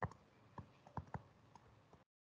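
Stylus tapping and clicking on a tablet screen while handwriting: about half a dozen short, sharp clicks at irregular intervals.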